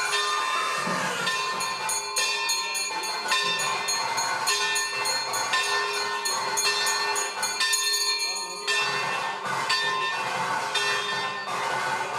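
Temple bells ringing for the aarti, rapid clanging strikes over steady ringing tones.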